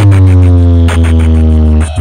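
Towering DJ speaker box stack playing electronic music at full volume during a speaker check: one long, buzzy, distorted bass note that dips slightly in pitch at the start and breaks off briefly near the end.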